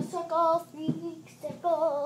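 A child singing a tune in short held notes with a wavering pitch, about four notes over two seconds.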